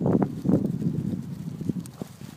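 Footsteps rustling and crunching through dead leaf litter in irregular bursts, loudest in the first half second and easing off near the end.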